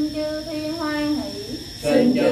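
A woman's voice in Buddhist devotional chanting holds one long note, which slides down in pitch about halfway through. Several voices then chant together again near the end.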